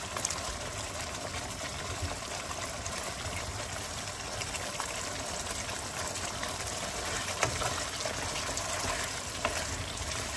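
Mutton curry simmering in a frying pan: a steady bubbling hiss with occasional small pops.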